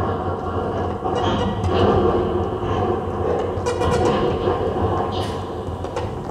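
Eurorack modular synthesizer playing a dense, rumbling electronic noise texture over a steady deep hum, with short hissy swells every second or two.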